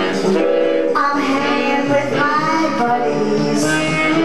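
A woman singing into a microphone over music, holding long notes that slide up and down in pitch.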